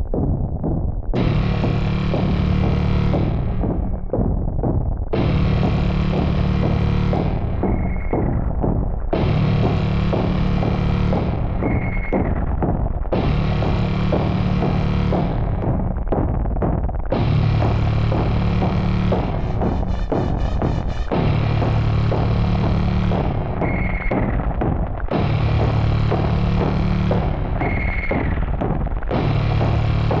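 Dark, distorted electronic synth music: a heavy, low chord strikes about every four seconds and dies away, with a short high tone after some of the strikes.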